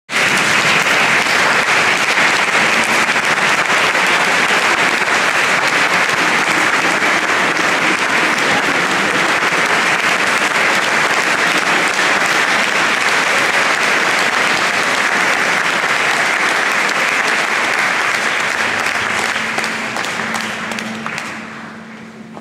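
Audience applauding steadily, then dying away over the last two seconds or so.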